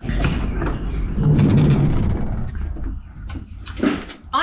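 Camper van door being opened and someone climbing in: a rushing, rumbling noise for about three seconds, then a few sharp clicks and a knock near the end.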